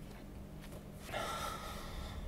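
A person's audible breath, a soft sigh-like exhalation starting about a second in, over a faint steady room hum.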